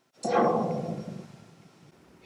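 A 40-foot high-tension steel wire plucked and heard through a magnetic pickup: a sudden twang whose pitch sweeps quickly downward from very high to low, then dies away. The falling sweep is dispersion along the wire: the high frequencies travel faster and arrive before the low ones.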